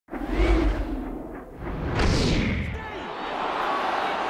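Broadcast intro sting: a deep boom with a whoosh, then a second swooshing whoosh about two seconds in, giving way near the end to a steady stadium crowd hum as the match footage begins.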